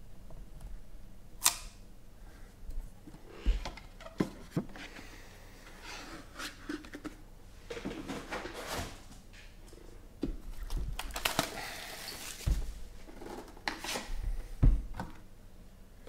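2017 National Treasures trading-card boxes being handled and unwrapped. A sharp snap comes about a second and a half in, there are stretches of tearing and rustling packaging, and the cardboard boxes knock as they are set down, the loudest knock near the end.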